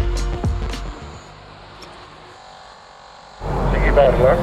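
A short music sting ends about a second in, leaving a quiet, steady background. Near the end the door intercom's line opens with a sudden rush of noise, just before a voice answers through it.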